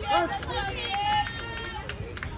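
Indistinct voices of softball players and spectators calling out across the field, mixed with many sharp clicks.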